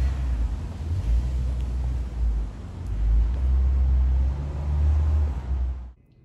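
Low, uneven rumble of wind buffeting a handheld microphone outdoors, over a faint steady hiss; it cuts off suddenly near the end.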